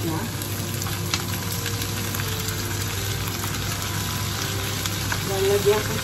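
Pork, green beans and eggplant slices frying in a pan, a steady sizzle, with one light knock about a second in.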